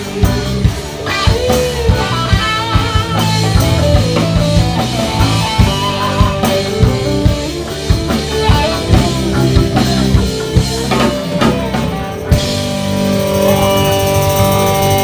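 Live reggae band playing an instrumental passage: electric guitars over bass and a drum kit keeping a steady beat. About twelve seconds in the drums stop and a held chord rings on.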